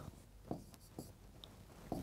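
Faint strokes of writing on a board, a few short taps and scrapes spaced about half a second apart.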